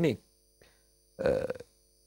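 A man's voice in conversation: a word trailing off, a pause, then a short voiced sound before another pause.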